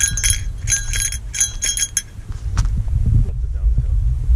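A small metal bell jingling in four or five short shakes during the first half, over a steady low rumble of wind on the microphone.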